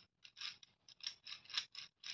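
A plastic gear cube puzzle being twisted by hand: about five quick bursts of clicking and rattling from its gears and layers, one burst per turn.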